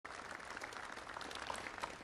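Audience applauding, the clapping easing off near the end.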